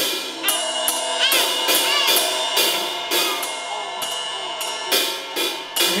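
A PDP drum kit played in a steady beat of about two to three hits a second, with the cymbals ringing on between the strokes.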